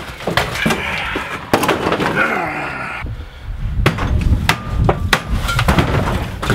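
Wooden panelling and cabinetry in a camper interior being pried and torn loose: repeated knocks, bangs and cracks of wood, with scraping and dragging underneath.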